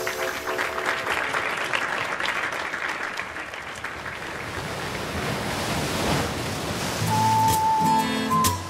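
Audience applauding, a dense crackle that slowly thins out. About seven seconds in, the band starts the next number with a held high keyboard note over low bass notes.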